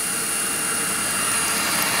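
Tefal Air Force 360 Light Aqua cordless stick vacuum running: a steady motor whir with a thin, steady high whine on top.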